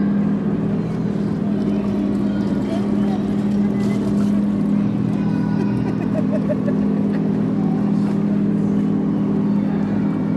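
Steady low hum of a small canal boat's motor running at an even pace, with voices faint in the background.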